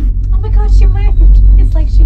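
A woman's voice over a loud, steady low rumble inside a moving gondola cabin.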